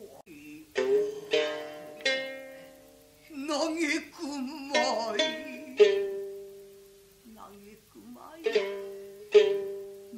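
Gidayū-bushi chanting with a thick-necked shamisen: single sharp plectrum-struck notes ring out and die away, and between them a woman's chanting voice sings wavering, drawn-out lines with heavy vibrato.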